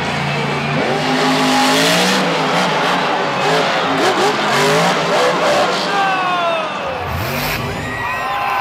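Monster truck's supercharged V8 engine revving hard, its pitch rising and falling repeatedly as the truck climbs and tips over.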